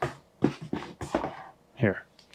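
A few knocks and clicks as a small card deck box is handled and set on a tabletop, the sharpest right at the start and about half a second in. A short voiced sound comes near the end.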